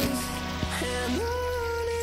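Background music with sustained, held notes; a new note comes in a little after a second.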